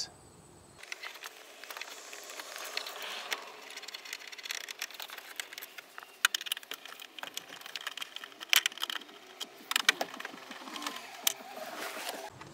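Irregular light clicks and taps of a nut driver and a small bolt being worked and handled at plastic dashboard trim, with a few sharper clicks in the second half.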